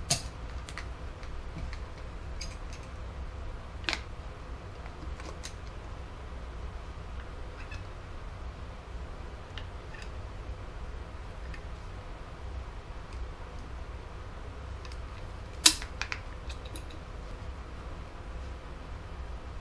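Caulking gun dispensing construction adhesive: a few sharp clicks and knocks, the loudest about fifteen seconds in, over a steady low hum.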